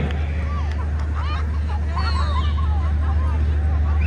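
A group of young women talking and calling out over one another in an excited babble, over a steady low hum.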